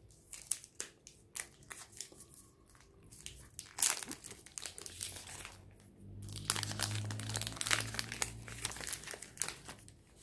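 Plastic chocolate-bar wrapper and inner foil crinkling as the bar is torn open and unwrapped by hand. It comes as quick crackles, scattered at first and much busier from about halfway through.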